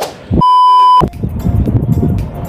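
An edited-in beep sound effect: one steady high tone lasting about half a second that cuts off abruptly. It is followed by wind rumbling and buffeting on a phone microphone outdoors.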